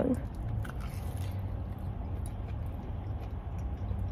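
Quiet chewing of a fried, cheese-filled potato corn dog: a few faint, soft mouth sounds over a low steady hum.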